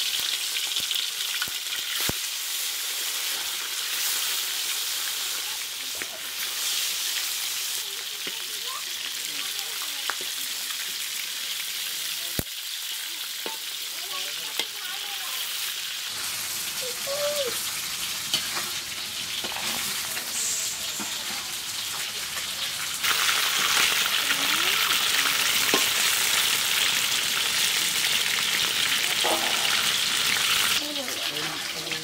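Whole tilapia sizzling as they shallow-fry in hot oil in a wide metal karahi, a steady high hiss. A few sharp clicks of a metal spatula against the pan, and the sizzling grows louder for the last several seconds.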